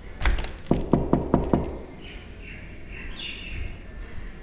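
Knuckles knocking on a wooden door with a frosted-glass panel: a quick run of about six knocks in the first second and a half. A brief high chirping sound follows in the middle.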